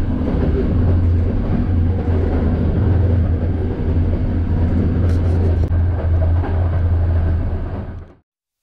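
Train running along the rails: a steady low rumble with rail noise and a few sharp clicks about five seconds in, fading out at the end.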